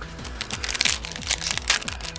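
Foil wrapper of a Pokémon booster pack crinkling and tearing as it is handled and opened, a rapid run of crisp crackles starting about half a second in. Background music with a steady low beat plays underneath.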